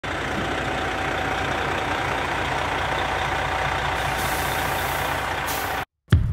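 Heavy water truck's engine running steadily with a deep, even rumble and a faint steady tone over it, cutting off suddenly just before the end.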